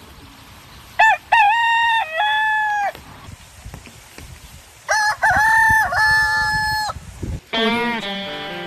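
A rooster crowing twice, each crow a loud call of about two seconds in several connected segments. Guitar music starts just before the end.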